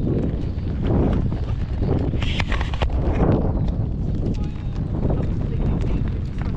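Wind buffeting an action camera's microphone as a low, steady rumble, with horses' hooves clopping on a gravel track.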